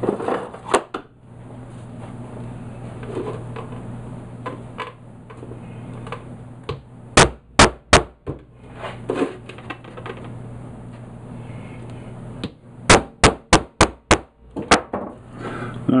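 Hammer tapping a punch through plastic roof flashing to make bolt holes: three sharp taps about seven seconds in, then a quicker run of about five taps near the end.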